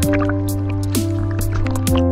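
Background music: a sustained bass line that changes note a couple of times, held chords, and a quick, even ticking beat.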